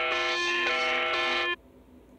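Ukrainian EAS (emergency alert) alarm playing: several loud steady tones sounding together, switching pitch about every half second. It cuts off suddenly about one and a half seconds in, as the player is closed.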